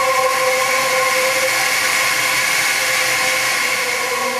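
Live electronic ambient music from synthesizers: steady held drone tones over a hiss. The lower tones fade out about a second in, leaving a higher tone and the hiss.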